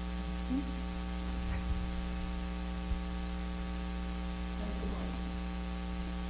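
Steady electrical mains hum with a faint hiss, unchanging throughout, with a few very faint small handling noises.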